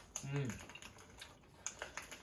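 Eating noises: light, scattered clicks of chopsticks against a small bowl, with a short voiced hum about half a second in.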